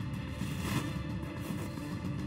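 Background music bed with steady sustained low notes, playing quietly between spoken lines.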